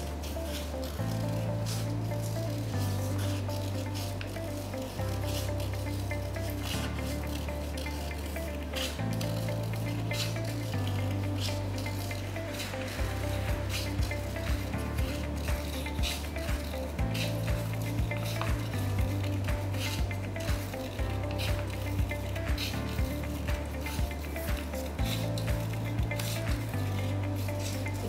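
Background music with a slow bass line, taking up a regular ticking beat about halfway through, over the short crisp snips of scissors cutting paper.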